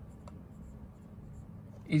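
Whiteboard marker writing a word on a whiteboard: a few faint short strokes over a low steady background hum.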